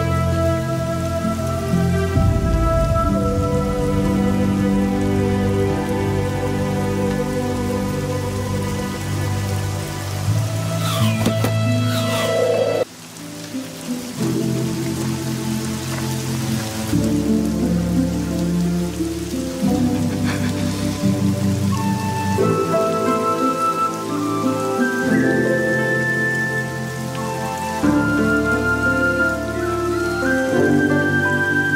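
Steady rain falling under a slow music score of long held notes and changing chords. The music thins out briefly about halfway through.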